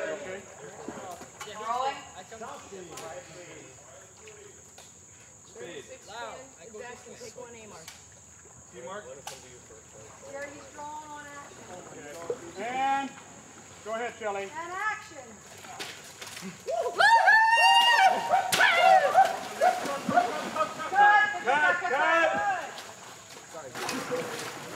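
Men whooping and yelling war cries, scattered and fairly quiet at first, then a loud burst of shouting near the end, with water sloshing and splashing as they run through knee-deep swamp water.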